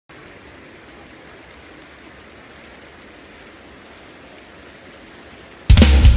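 A steady, quiet hiss of noise, then about five and a half seconds in a rock band comes in loud all at once, with drums, bass and electric guitars.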